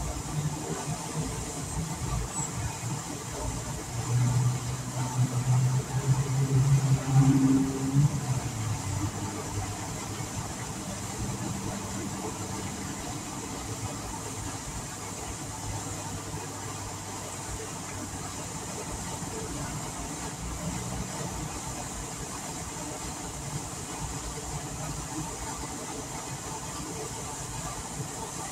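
Fountain jet spraying and falling back into a lake, a steady hiss. A vehicle engine hums nearby from about four to ten seconds in, louder there and dropping in pitch near the end.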